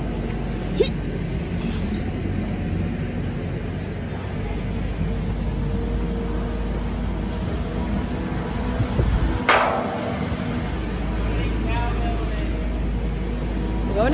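Diesel telehandler engine running steadily with a low hum, over an even hiss of rain. A brief high sound cuts through about nine and a half seconds in.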